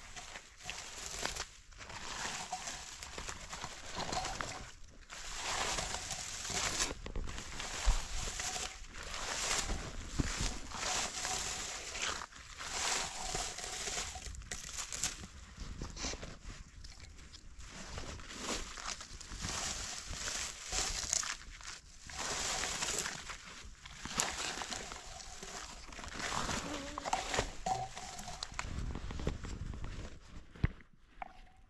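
Hand-held berry-picking scoop with metal tines combing through bilberry shrubs, making repeated, irregular rustling and brushing strokes of leaves and twigs.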